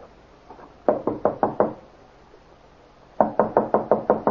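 Knocking on a door: a run of five knocks about a second in, then a quicker run of knocks near the end.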